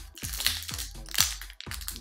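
Foil booster-pack wrapper crinkling in the hands in several short bursts, over background music with a low note repeating about twice a second.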